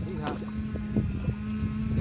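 A steady motor drone hums throughout, while a hooked fish splashes and thrashes a few times in the shallows at the bank.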